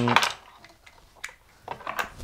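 Metal jack plugs of guitar patch cables clicking and clinking lightly as cables are picked out of a pile and handled, with a sharper click at the very end.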